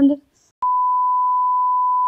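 Censor bleep: one steady, high beep tone cuts in about half a second in and holds level, blanking out a word of the talk.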